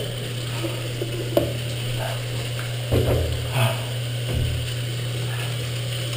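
Tap water running from a faucet into a bathroom sink while hands are rubbed and rinsed under it, over a steady low hum, with a few brief knocks about one and a half and three seconds in.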